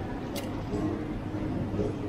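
Murmur of background voices in a busy indoor market hall, with one brief sharp crinkle of aluminium foil being peeled off a chocolate bar about half a second in.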